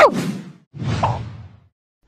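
A cartoon whoosh sound effect for a character taking off in flight: a single swell of rushing air about halfway in that rises and fades within a second.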